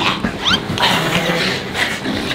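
People making growling, squealing noises as they grapple, with a sharp rising squeal about a quarter of the way in.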